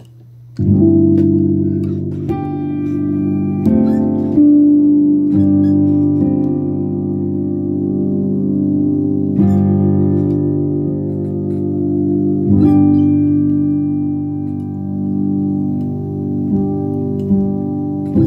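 Keyboard played piano-style: slow, held chords. A new chord is struck every one to four seconds, starting about half a second in.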